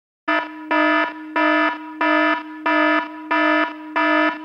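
Smartphone wake-up alarm ringing: a repeating electronic alarm tone that pulses louder about one and a half times a second over a held note, starting about a quarter second in.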